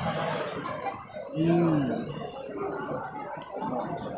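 A man's short closed-mouth 'mmm' hum while eating, rising and then falling in pitch, about a second and a half in, over low background noise.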